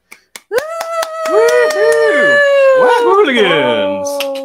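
Two or more voices vocalising at once into microphones in long, held and wavering notes, like howling. One voice slides far down in pitch near the end.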